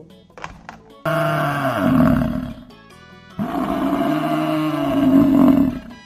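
American bison bellowing twice: a low, rough roar starting about a second in and lasting about a second and a half, then a longer one of about two and a half seconds, each falling in pitch toward its end.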